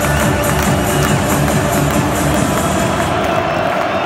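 Music with a steady beat played loud through a football stadium's sound system over crowd noise; the beat drops away about three seconds in, leaving the crowd.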